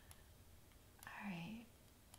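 A woman's brief, soft vocal murmur about a second in, with a couple of faint computer mouse clicks.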